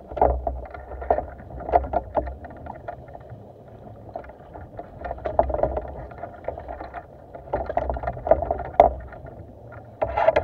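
Scuba regulator exhaust bubbles gurgling underwater as a diver breathes out, coming in bursts with quieter stretches between breaths.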